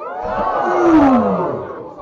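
Several voices shouting at once, with one long cry falling steadily in pitch.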